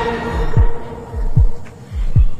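Suspense sound cue: low heartbeat-like thumps in pairs, falling in pitch, about every three-quarters of a second, under a steady held drone.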